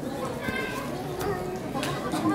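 Crowd chatter: many adults and children talking at once close around, with a few sharp clicks among the voices.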